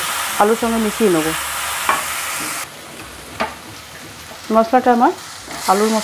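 Potatoes in a spiced masala paste sizzling in hot oil in a non-stick kadai, stirred with a silicone spatula that scrapes the pan now and then. The sizzle drops away abruptly a little over halfway through and comes back near the end.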